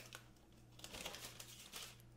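Parchment paper rustling and crinkling faintly as it is peeled back off a baking sheet and laid down again.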